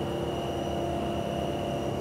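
Steady machine drone with a thin, high, steady whine from the aeration tank of an extended-aeration sewage treatment plant, where air is blown into the wastewater to supply oxygen to the bacteria.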